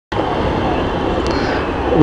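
Steady noise of passing road traffic, with a brief faint high-pitched tone about a second in.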